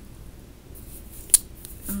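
A single sharp click about halfway through, during a pause in speech.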